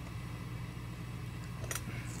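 Low steady electrical hum from an idle guitar amplifier, with one brief faint click near the end.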